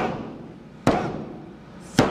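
A referee's hand slapping the wrestling-ring canvas three times, about a second apart: the pinfall count, each slap sharp with a short echo off the hall.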